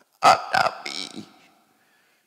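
A short, loud vocal sound from a man close to a microphone, about a second long: two abrupt onsets followed by a breathy tail.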